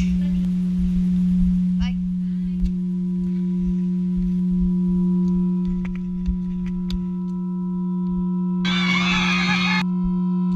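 A steady low hum with a second steady tone above it and an uneven low rumble beneath. More high steady tones join after about two seconds. Near the end a loud rushing noise lasts about a second.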